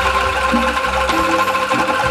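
Angklung ensemble playing: rows of tuned bamboo tubes shaken in a fast rattling tremolo, holding steady chords over a pulsing low bass rattle.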